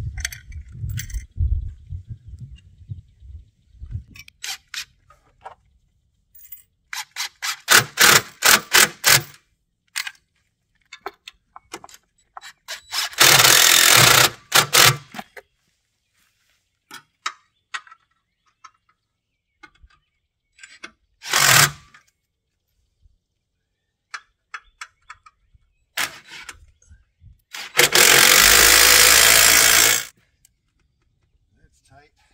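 Fastening work on the trailer tongue's battery tray and spare-tire hoist mount: scattered metal clicks and knocks, a quick run of clicks about eight seconds in, and two loud bursts of a power driver lasting about two seconds each, about halfway through and near the end.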